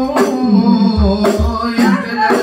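Men singing sholawat through a microphone and PA, with a rebana frame drum beating under the voices.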